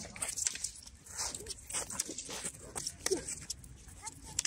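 Scattered light clacks and knocks of training swords and footfalls during a sword sparring bout, with a few brief, faint high-pitched yelps in between.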